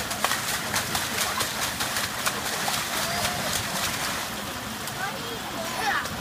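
Water splashing as children kick their feet in a shallow inflatable pool: rapid, repeated splashes through the first few seconds, thinning out toward the end, with faint children's voices.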